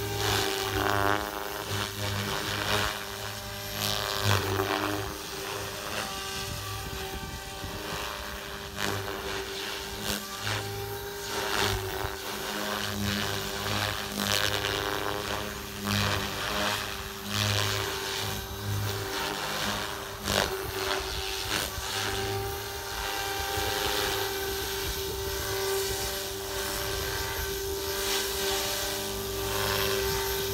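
ALZRC Devil 380 electric RC helicopter in flight: its rotor and motor give a steady whine on one unchanging tone. Gusts of wind buffet the microphone now and then.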